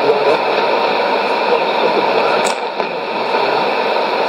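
Shortwave AM broadcast coming through a Sony ICF-2001D receiver tuned to 11580 kHz: a weak voice under a steady hiss of static. A brief click comes about two and a half seconds in.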